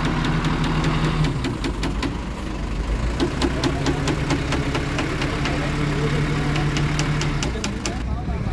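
Truck-mounted crane's engine running with a steady low hum that drops out briefly after about a second and comes back, with rapid, irregular clicking over it for most of the time.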